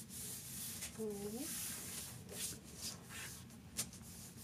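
Hands rubbing and smoothing a sheet of cardstock onto a Cricut cutting mat: a hissy, sliding rub for about two seconds, then a few short paper rustles.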